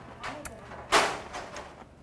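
Close-miked mouth sounds of a man chewing a mouthful of food: wet chewing and lip smacks, a short hum near the start, and one louder breathy burst about a second in.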